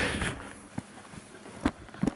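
Brief rustling handling noise as a hand-held camera is swung away, then a quiet background broken by a few short clicks, the loudest near the end.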